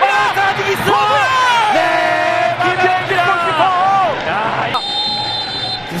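Excited voices of the match commentators. About five seconds in, a steady high whistle blast lasts about a second: the referee's final whistle, ending the match goalless.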